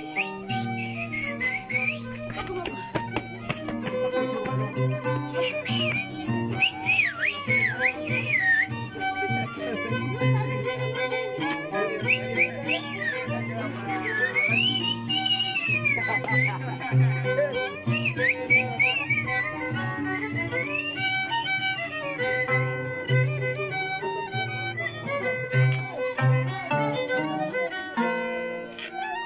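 A violin and an Andean harp playing a carnival tune together. The violin carries the melody with sliding, wavering high notes, while the harp plucks a steady, repeating bass line underneath.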